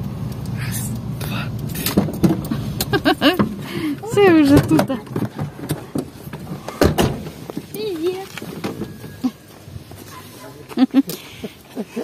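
Car engine idling, heard from inside the cabin, stopping about three and a half seconds in. Then come sharp knocks from the car door, the loudest about seven seconds in, and people's voices calling out.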